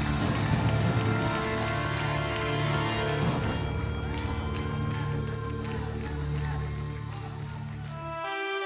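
Instrumental close of a romantic ballad: held chords over a steady bass, with light ticking percussion, getting slowly quieter toward the end.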